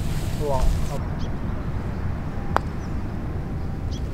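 A putter striking a golf ball: one sharp click with a short ring, about two and a half seconds in, over a steady low rumble.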